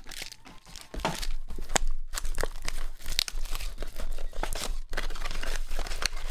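Clear plastic shrink wrap and card-pack wrappers crinkling and tearing as a sealed box of trading cards is opened by hand. It is a dense run of sharp crackles and rips, quieter during the first second.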